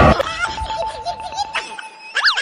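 A man laughing in a quick run of short repeated bursts.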